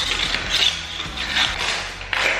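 Long cleaning brush scrubbing between the sections of an old cast-iron radiator, a series of scratchy strokes about a second apart.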